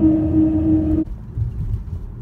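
Car tyres humming on a bridge's ribbed grid deck, heard from inside the car as a loud, steady, one-note drone over low road rumble. The hum cuts off suddenly about a second in, leaving only a quieter low rumble.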